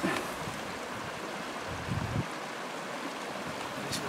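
Steady rushing outdoor background noise, with a brief low rumble about two seconds in.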